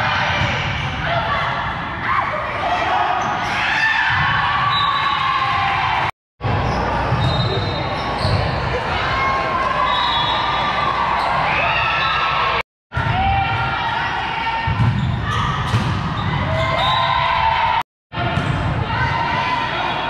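Indoor volleyball play: the ball being struck and hitting the floor, mixed with players' calls and the chatter of spectators in a large gym. The sound cuts out completely for a moment three times.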